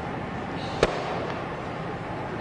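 One sharp, very short crack from a karate technique, about a second in, over steady room noise.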